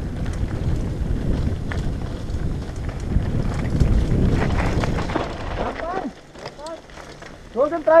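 Downhill mountain bike descending a rough gravel trail: wind buffeting a helmet-mounted microphone over the rumble and rattle of tyres and suspension on loose dirt. The noise drops off about six seconds in as the bike slows.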